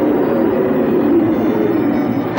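Subway train running through a station: a loud, steady rushing rumble with a low tone that slowly falls.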